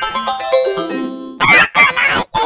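Jingle notes stepping down in pitch, then about a second and a half in two loud short cries whose pitch bends up and down, a cartoon-style sound effect in a distorted logo-intro jingle.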